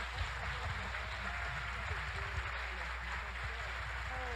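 Audience applauding steadily, with voices calling out through the clapping.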